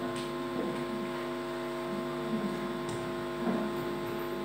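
Steady electrical hum from a microphone and loudspeaker sound system, several held tones at once, with a few faint clicks and rustles.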